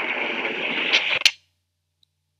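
Steady rushing outdoor noise on the soundtrack of amateur footage of the sky, with two sharp cracks about a second in. Then it cuts off abruptly as the playback stops.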